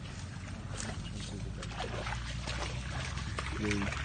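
Water buffalo grazing and wading in a shallow pond: irregular crackling and splashing over a steady low rumble, with a short low pitched sound near the end.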